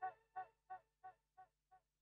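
The song's last pitched note repeating as a fading echo, about three repeats a second, each one quieter until it dies away.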